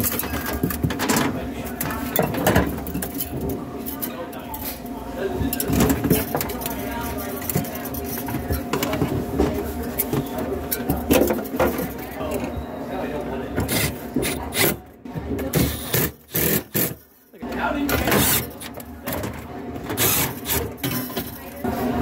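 Sheet-metal handling noise: knocks, rubs and scrapes of an evaporator coil and a stainless drain pan being set into a cooler cabinet. A steady hum runs underneath.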